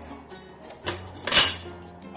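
Glass pot lid set onto a stainless steel stockpot: a light click a little under a second in, then a louder clink with brief ringing about a second and a half in.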